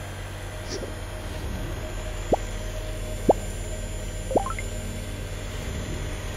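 Car alternator converted into a brushless motor, running with a steady low hum, with three short sharp knocks about a second apart in the middle as sudden acceleration makes the motor jump.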